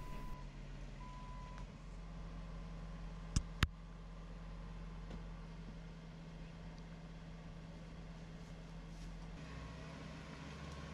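Jeep Wrangler engine idling steadily while stuck in ruts during a strap recovery, with two short beeps in the first two seconds and two sharp clicks about three and a half seconds in.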